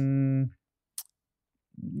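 A man's drawn-out hesitation sound held at one steady pitch, ending about half a second in, then a pause broken by a single short mouth click about a second in.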